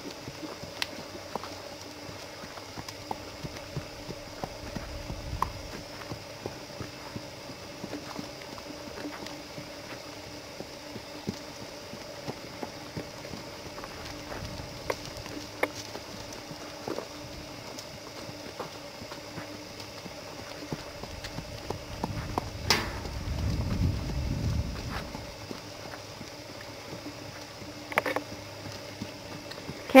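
Hoofbeats of a horse trotting loose on soft dirt, a run of faint irregular thuds. About three-quarters of the way through there is a sharp click followed by a brief low rumble.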